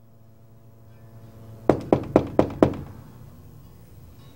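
Five quick knocks on a wooden room door, about four a second, over a faint steady hum.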